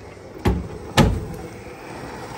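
Oven door being shut: two thumps about half a second apart, the second louder and ringing briefly.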